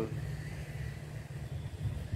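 A steady low rumble, unsteady in level, with no clear event on top of it.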